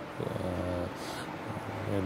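A man's voice held on a low, drawn-out hesitation sound, twice, quieter than his speech: a filler between phrases rather than words.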